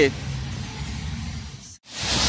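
Wind buffeting a phone microphone outdoors, a low rumble with faint hiss, which cuts off suddenly near the end.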